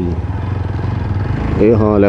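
TVS Apache RTR motorcycle's single-cylinder engine running steadily at low road speed, a low even hum, with a man's voice over it at the start and near the end.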